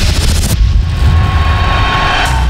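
Loud, deep rumbling sound effect of a TV title sequence, with a hissing rush that cuts off about half a second in.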